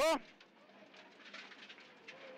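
Faint engine and road noise from inside the cabin of a Subaru Impreza WRX STi rally car (turbocharged flat-four), low and steady. At the very start, a short loud spoken pace-note call cuts across it.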